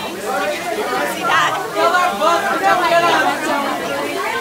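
A crowd of young people talking at once, many overlapping voices chattering.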